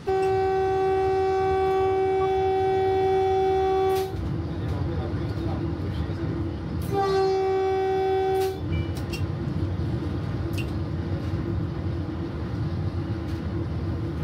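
Horn of an electric multiple unit train, heard from the driver's cab: one long steady blast of about four seconds, then a shorter blast of under two seconds about three seconds later. The train's running rumble lies under both.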